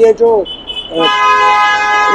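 Vehicle horn honking one steady blast of about a second, starting about a second in, preceded by a thinner high tone.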